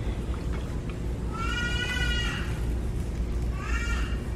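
A young child's high-pitched squeal, held for about a second and dipping at its end, then a second short rising squeal near the end, over a steady low background rumble.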